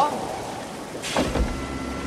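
A steady rushing hiss, then about a second in a knock, after which a low mechanical hum with a thin steady whine sets in: the Crystal Dome's powered door mechanism starting to open, sticking at first.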